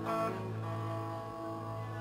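Live band playing softly, with held guitar and bass notes ringing out over a steady low tone.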